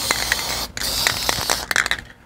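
Aerosol spray paint can hissing in short passes over a rifle, with a brief break about two-thirds of a second in and a few clicks; the can is running almost empty. The hiss stops just before the end.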